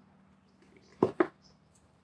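Two quick handling knocks about a second in, a fifth of a second apart, as the metal earphone shells are handled over their paper box, over a faint steady hum.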